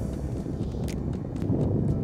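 Footsteps on the salt-crusted lakebed, with wind rumbling on the microphone.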